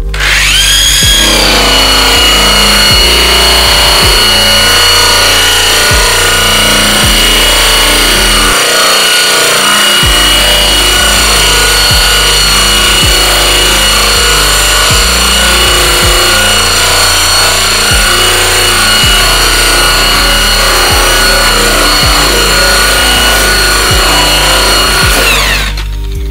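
Electric polisher with a satin buffing wheel spinning up with a rising whine, then running steadily with a high whine as the wheel is pulled across bare aluminium sheet, stripping the clear coat. It stops shortly before the end.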